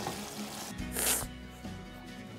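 Ground meat sizzling in a frying pan as a spatula stirs it, fading after under a second into quiet background music with steady tones. A brief hiss about a second in.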